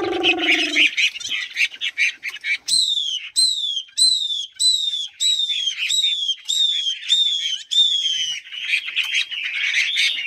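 Caged songbirds singing: fast high chattering twitters, and from about three seconds in a run of about ten clear whistled notes, each sliding downward, at a little over one a second, before the chattering takes over again near the end. A lower, drawn-out falling tone fades out in the first second.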